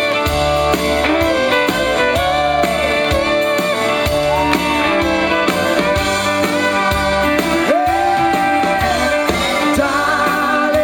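A live country band plays an instrumental break, amplified and recorded from the crowd: electric guitar, bass and drum kit over a steady beat. A lead instrument plays long held notes that slide up and down.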